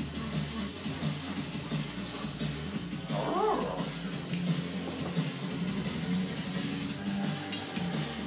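Background music plays steadily, and about three seconds in a dog gives one short, high-pitched whine that rises and falls.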